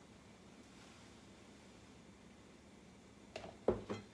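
Quiet kitchen room tone, then near the end a few sharp knocks, the loudest with a dull thud: seasoning containers knocking on the counter as they are handled and set down.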